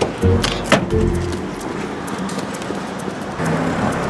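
Background music over a steady hiss, with two sharp knocks a little under a second in from a car's rear hatch being shut.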